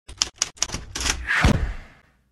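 Title-animation sound effects: a quick run of sharp typewriter-like key strikes as letters appear, then a swelling whoosh with a deep boom about a second and a half in that dies away near the end.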